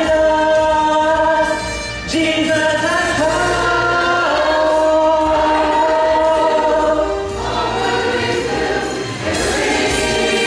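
Church choir singing in parts with instrumental accompaniment, holding long chords and breaking briefly between phrases.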